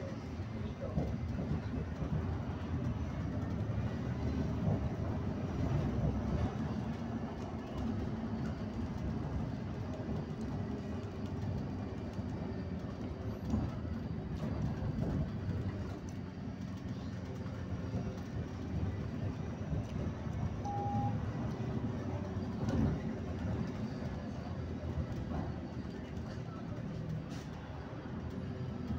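Steady low rumble of a moving road vehicle heard from inside it: engine and tyre noise on the road. A short single beep sounds about three-quarters of the way through.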